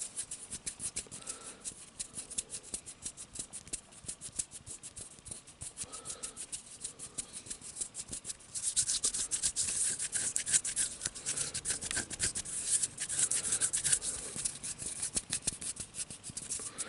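Bare hands rubbing together close up, skin on skin, making a fast, dry, crackling rasp that grows louder about halfway through.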